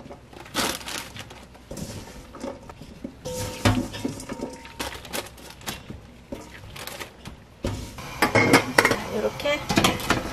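Rustling of parchment paper and plastic gloves as a crumbly glutinous-rice-flour mixture is scattered by hand into a paper-lined steamer basket, with light clicks of stainless-steel bowls. There is one sharper metal knock with a brief ring about a third of the way in, and louder handling noise near the end.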